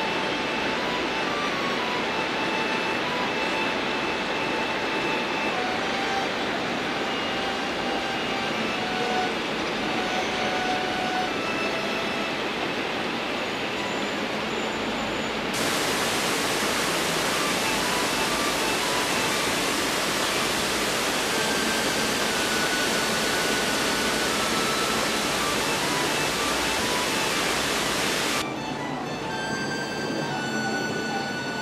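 A loud, steady rushing noise with faint background music beneath it. The noise turns brighter and louder about halfway through and falls away again near the end.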